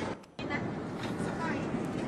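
Airliner cabin noise: a steady hiss with faint voices underneath. It follows a short dropout of sound just after the start.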